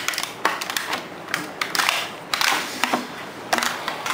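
Clear plastic blister packaging crackling and snapping as a small portable speaker is pried out of its tray by hand: a quick, irregular run of crisp clicks and crinkles.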